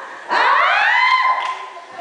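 A woman's long wordless cry into a microphone: it sweeps up steeply in pitch, holds high for about a second, then fades.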